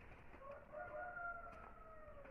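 A faint animal call: one long drawn-out call with a steady pitch that starts about half a second in and sinks slightly towards the end.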